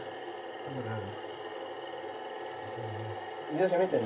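A pause in conversation filled with a steady background hum and a couple of faint low murmurs. A man's voice starts speaking near the end.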